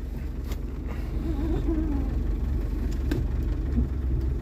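Land Rover engine idling, heard from inside the cabin as a steady low hum, with two faint clicks as the transfer-case lever is shifted into low range with the centre differential locked.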